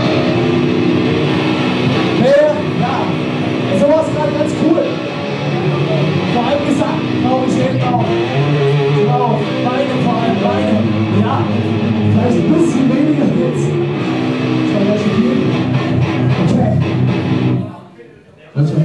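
Live rock band playing: electric guitars and drums with a male vocalist singing over them. The song stops abruptly just before the end.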